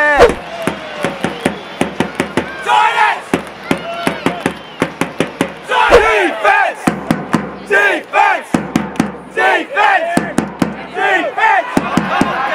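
A drum beaten with a felt-headed mallet at a quick, steady beat of about three to four strikes a second, with a crowd of supporters shouting a chant in bursts over it. Two heavier low thumps, near the start and about six seconds in, are the loudest hits.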